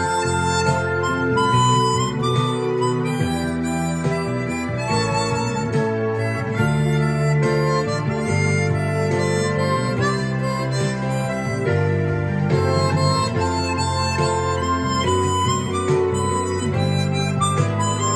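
Hohner 280-C Chromonica chromatic harmonica playing the melody in held notes over a recorded backing accompaniment with bass.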